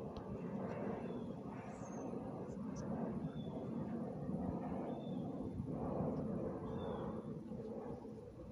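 Outdoor background noise: a steady low rumble with short high chirps every second or two.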